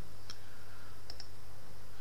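Three faint clicks, one about a third of a second in and a quick pair just after a second in, over a steady low hum: computer clicks advancing the lecture slides.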